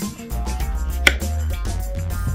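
Kitchen knife slicing through a taro root and knocking on a wooden cutting board, with one sharp knock about a second in as the blade cuts through. Background music with a steady bass runs underneath.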